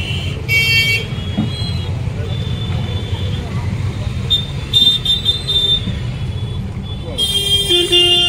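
Street traffic rumbling steadily, with vehicle horns honking over it: a short honk about half a second in, more honks around the middle, and a longer, louder honk starting near the end.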